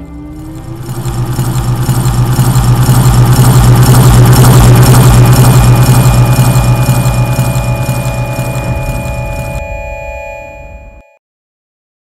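A synthesized sci-fi effect: a loud, steady low drone under a pulsing rush of noise that swells over the first few seconds and fades away by about ten seconds in. A few held tones linger briefly before it cuts off to silence near the end.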